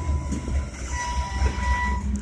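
Freight train tank cars rolling past close by: a steady low rumble of wheels on rail, with a thin high squeal from the wheels coming and going.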